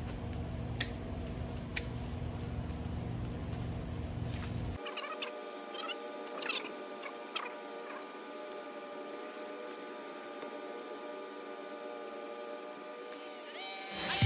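Hand pruners snipping crepe myrtle branches: two sharp clicks about one and two seconds in, over a faint low hum. About five seconds in the hum drops away, leaving faint steady tones and a few short chirps.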